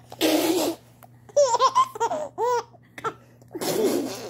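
Laughter: a short breathy burst, then a run of high-pitched laughing syllables, each rising and falling, about a second in, and another breathy burst near the end.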